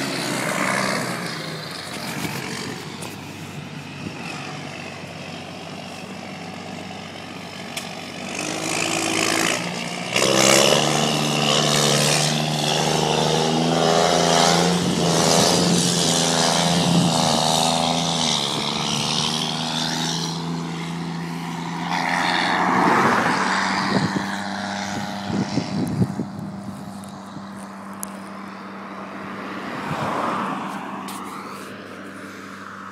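Case IH Puma 180 tractor's turbocharged six-cylinder diesel, straight-piped straight off the turbo, running loud. It fades somewhat as the tractor pulls away, then comes back much louder about ten seconds in with a steady engine note held for around ten seconds, followed by another brief surge.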